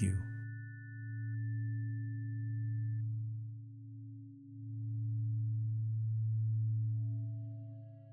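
Synthesized meditation tones: a low steady sine tone with a weaker tone above it, swelling and fading slowly about every three and a half seconds. Two high pure tones cut off in the first few seconds, and a higher bell-like tone with faint overtones comes in near the end.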